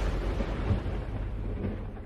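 Low rumble of a boom effect that closes the dance track, dying away steadily.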